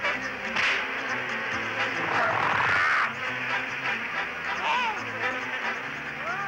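Insect-like buzzing sound effects of a swarm of cartoon antibodies going on the attack, over a steady low background score. It is loudest a couple of seconds in, with short swooping squeaks in the second half.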